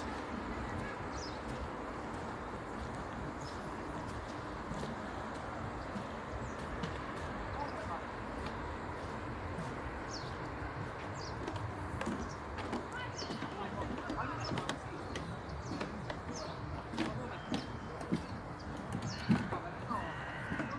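Lakeside outdoor ambience: a steady low background with scattered faint, short bird chirps and a few small knocks.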